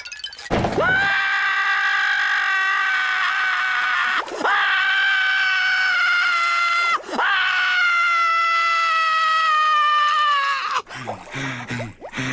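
A cartoon character screaming: one long, loud, high scream that is broken twice by quick breaths, about four and seven seconds in. Its pitch slowly sinks before it stops near the end.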